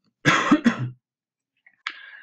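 A man coughing: a short fit of a few quick coughs in the first second.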